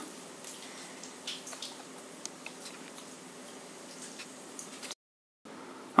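Quiet room tone with a faint steady hum and a few soft small clicks, then half a second of dead silence at an edit near the end.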